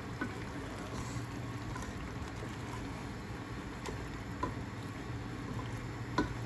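Lamb and masala gravy bubbling and sizzling softly in a pot, with a few light knocks of a wooden spoon against the pot as it is stirred, over a steady low hum.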